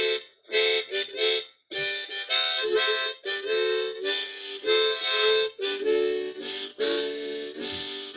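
Harmonica played solo with cupped hands, a tune of short phrases with several tones sounding at once and brief breaks between them.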